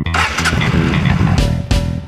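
A motorcycle engine starting up and running, a burst of engine noise in the first second and a half, laid over rock music with bass guitar and electric guitar.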